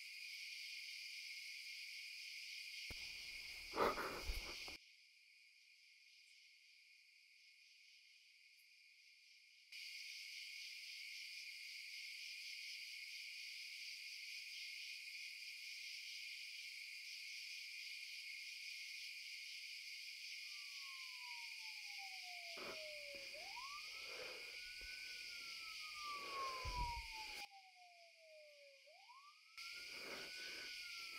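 Faint, steady chirring of night crickets. It breaks off for about five seconds after a brief louder sound near the start. Later a tone slides slowly down and then sharply back up, twice, with a few soft knocks between.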